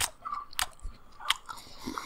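Crisp lettuce being bitten and chewed close to a microphone: four sharp crunches about two-thirds of a second apart, with softer chewing between them.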